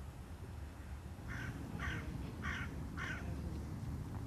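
A bird calling four times in quick succession, evenly spaced about half a second apart, over a steady low rumble of wind on an outdoor microphone.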